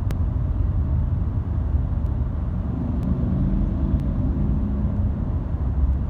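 Steady low rumble of a car's engine and tyres on the road, heard from inside the cabin while moving slowly in heavy freeway traffic. A few faint clicks sit over it.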